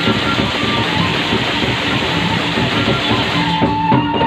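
Sasak gendang beleq ensemble playing: many hand-held ceng-ceng cymbals clash in a dense, fast rhythm over drums, and a sustained pitched melody line comes in near the end.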